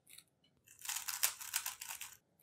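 Plastic layers of a stickerless 3x3 speedcube being turned quickly by hand while a swap algorithm is executed: a rapid run of light clicks and clacks starting about a second in, after a few faint ticks.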